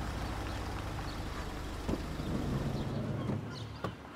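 Mercedes-Benz Vito van and the cars behind it rolling up slowly on a paved driveway: a steady low engine rumble with tyre noise on the paving stones. A sharp click near the end as the sound drops away.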